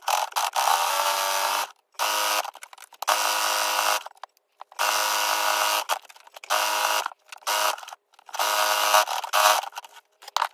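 Brother electric sewing machine stitching in about seven short bursts, its motor whirring with a steady pitch while each run lasts, stopping and starting with brief gaps between.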